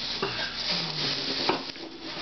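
Thin clear plastic bag crinkling and rustling as a wooden box is slid out of it, with a couple of sharp crackles.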